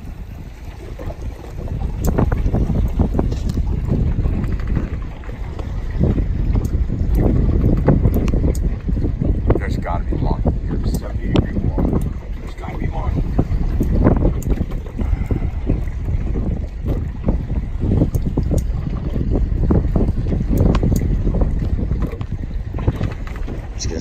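Wind buffeting the microphone on a boat at sea: a loud, uneven low rumble that surges and eases in gusts.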